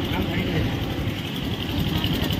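Outdoor street noise: a steady low rumble with faint voices in it.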